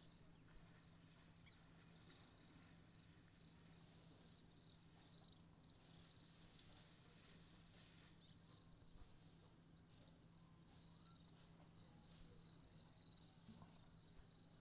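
Very faint outdoor ambience: high chirping calls from small wildlife repeat throughout, over a low steady hum.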